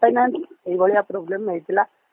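A man's voice speaking over a telephone line, with the thin, narrow sound of a phone call. It pauses briefly about half a second in.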